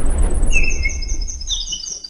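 An intro sound effect: the deep rumble of a boom dying away, with runs of high, quickly repeating chirping tones over it. It cuts off abruptly at the end.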